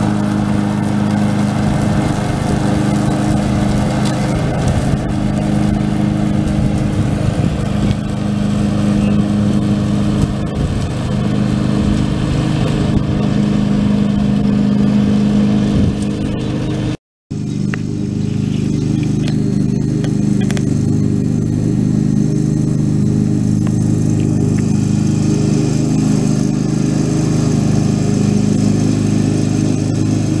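Husqvarna ride-on lawn mower's engine running steadily at mowing speed with the deck blades cutting grass. The sound drops out for a moment just past halfway, then carries on unchanged.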